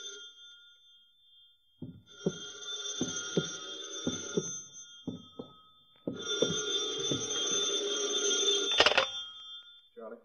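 Telephone bell ringing in long rings, two of them, with a series of short knocks under and between them, and a sharp click near the end as the ringing stops, the phone being picked up.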